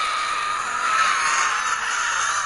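A sustained hissing, whooshing sound effect with a faint wavering whistle in it and no beat or bass.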